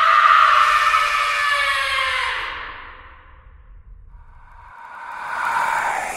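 A sudden, loud, echoing whoosh sound effect that sinks in pitch and dies away over about three seconds. A second whoosh swells up near the end.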